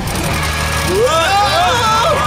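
Cartoon character voices crying out in rising and falling wordless exclamations, over a steady low engine rumble from the animated monster trucks.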